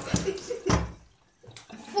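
Liquid running, a drink being poured, with a brief louder gush before it stops about a second in.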